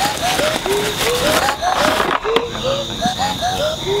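Canada geese honking, short calls two or three a second at several pitches, some overlapping, over the crackle of dry cornstalks being handled.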